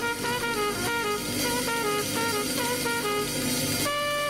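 Jazz quartet playing a blues live: a brass horn plays a quick run of short notes over guitar, bass and drums.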